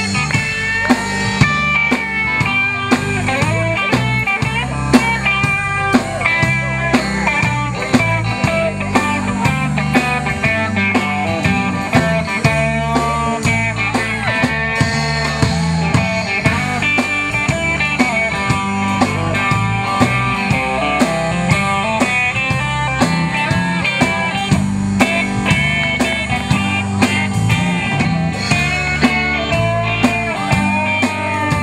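A live band plays an instrumental break of a country-rock song: an electric guitar plays a bending lead line over bass and a steady drum beat.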